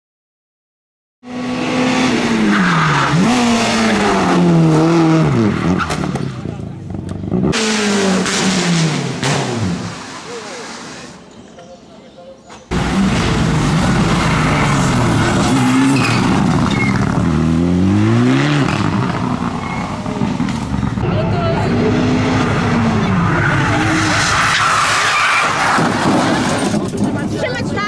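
Turbocharged four-cylinder rally cars at full attack, engines revving hard with the pitch falling and climbing again through gear changes and braking, with tyre squeal. The sound starts about a second in, drops quieter for a couple of seconds near the middle, then comes back loud with a sudden jump.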